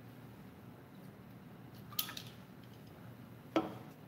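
A man drinking from a bottle over quiet room tone, with one sharp short sound about halfway through and a brief throaty sound near the end.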